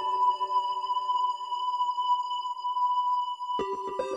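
Korg microKORG synthesizer holding a sustained chord with a bright high note, while the low rhythmic pulse under it fades away. About three and a half seconds in, a new chord strikes and the low pulse comes back in.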